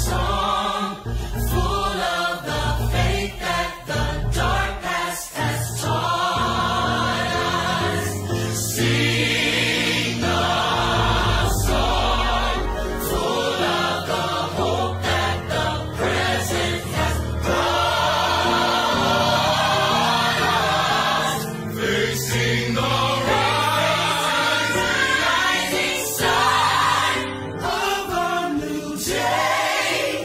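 Gospel choir singing in full harmony over a low bass line.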